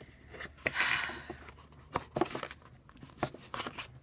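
Thin plastic card sleeves being handled as photocards are slid into them: a short rustle about a second in and a few light clicks.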